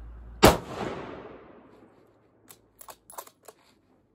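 A single rifle shot from a 6.5 Creedmoor Tikka T3x TAC A1, sharp and very loud, its echo dying away over about a second and a half. A few light clicks follow two to three seconds in.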